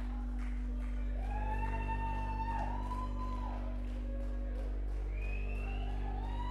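A live rock band holds a steady low drone while guitar tones slowly swell and glide in pitch above it, each long note bending up or down over a second or two.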